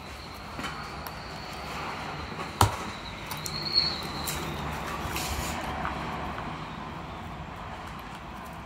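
Skateboard wheel bearing being pressed by thumb into the wheel's hub, with a few light clicks and one sharp click about two and a half seconds in, over a steady background hum.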